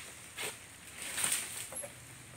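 Dry fallen oil palm fronds crunching and rustling underfoot in two short bouts, the first about half a second in and the second, slightly longer, just past the middle.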